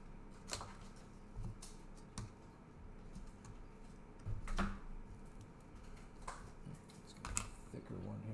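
Light plastic clicks and rustles as a trading card is handled and slid into a rigid clear plastic top loader, with about five sharper ticks spread irregularly through.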